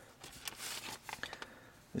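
Faint rustling and crinkling of a folded paper sheet and a plastic bag being handled and picked up off a car seat, mostly in the first second or so.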